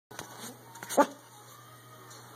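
Pomeranian giving one short, loud yip about a second in, after a few small handling knocks from the phone. A faint steady low hum runs underneath.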